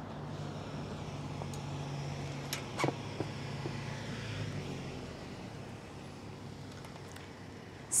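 A bicycle seat clamp being loosened and the seatpost slid down to lower the saddle: a few sharp clicks and knocks, the loudest nearly three seconds in, over a steady low background hum.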